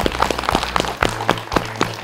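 A group of women clapping their hands in a dense burst of applause.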